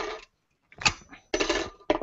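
Metal plates of a foot-bath ring set clinking and rattling as the set is worked out of its plastic module with needle-nose pliers: a short rattle at the start, a sharp metallic click a little under a second in, then another rattle and click near the end.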